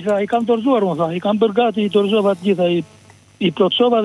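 A telephone caller's voice heard over the phone line, talking almost without pause, with one short break near the end.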